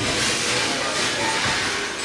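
Steady rushing street noise in the open air, with faint voices in the background.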